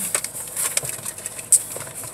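A cardboard box being opened by hand: scattered light clicks and rustles of the packaging, with one sharp click about one and a half seconds in.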